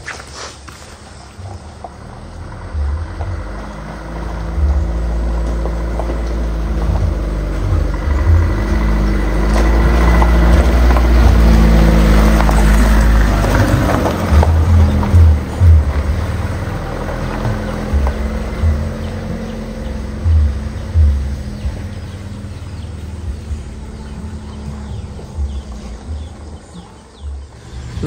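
Background music of sustained, steady low tones, over a low engine rumble from an Elf minibus that swells to its loudest in the middle and then fades into uneven low thumps.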